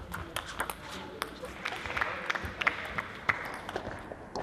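Table tennis balls being struck by bats and bouncing on the tables during rallies: a quick, irregular run of sharp clicks, with voices in the background.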